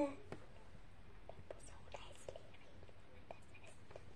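Faint whispering with a few small, scattered clicks, all very quiet.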